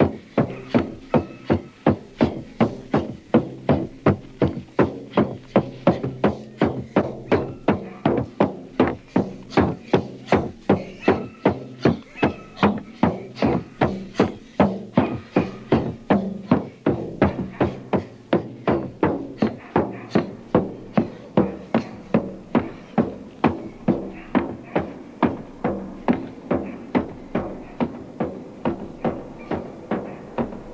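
Hand-held frame drum beaten in a steady dance rhythm, about two to three beats a second, for a ritual dance.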